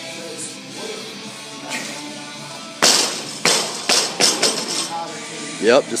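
A barbell loaded with rubber bumper plates hits the floor with a loud bang about three seconds in and bounces several times, the knocks coming closer together as it settles, over background music.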